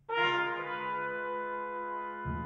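Chamber ensemble music: a loud chord with a sharp attack enters at the very start and is held steadily, many pitches sounding together.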